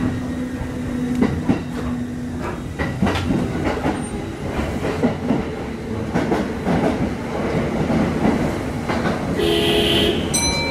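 Kintetsu Osaka Line commuter electric train running into a station, heard from the front of the train. The wheels clack over rail joints and points throughout. A steady low hum drops out in the first couple of seconds, and a short burst of steady tones comes near the end.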